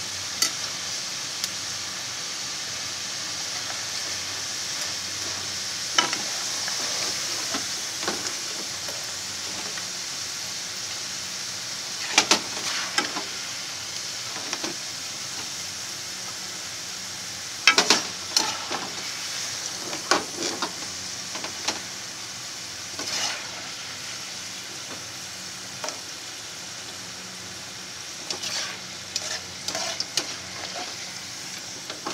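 Potato fries frying in hot oil in a frying pan: a steady sizzle that eases slightly over time. A few times a metal skimmer stirs them, clicking and scraping against the pan.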